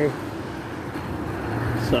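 Steady hiss of wheels rolling over wet pavement, with a faint low hum joining near the end.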